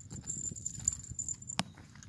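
A single sharp click from a pet training clicker about a second and a half in, over a low steady rumble of walking and handling noise and a thin, steady high-pitched tone that stops just before the click.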